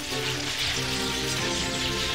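Cartoon electric-crackle sound effect, a dense sizzling crackle of lightning as a taser tower charges, over background music with held notes.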